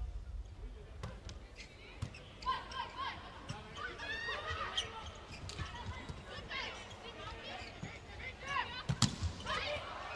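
Volleyball being struck during an indoor rally, a few sharp hits, the clearest about two seconds in and near the end, with players calling out faintly in the arena.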